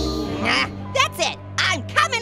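A sped-up, high-pitched cartoon voice gives several short squealing cries over a steady low music drone.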